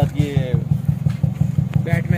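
A modified Toyota Corolla E140's engine idling through an aftermarket HKS exhaust, giving a steady, evenly pulsing low throb.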